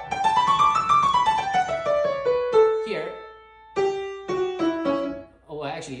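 Grand piano, a right-hand scale run: notes climb quickly to a peak about a second in, then step back down. After a short pause, a few more descending notes follow.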